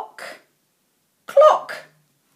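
A woman's voice sounding out isolated speech sounds in a phonics exercise: two short clipped sounds, the second louder, about a second apart.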